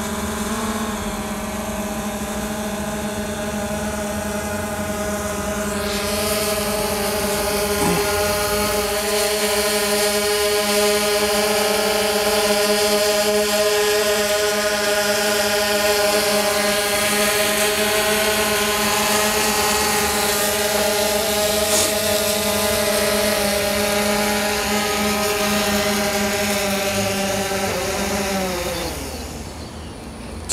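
DJI Phantom 2 quadcopter's four electric motors and propellers giving a steady multi-tone whine while it hovers and flies, louder from about six seconds in. Near the end the pitch slides down as the motors spin down on landing.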